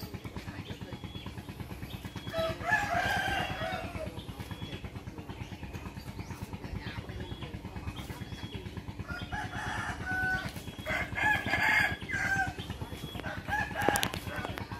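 A rooster crowing, once a few seconds in and again in a longer stretch about two-thirds of the way through, over the steady, evenly pulsing low rumble of a small engine running at idle.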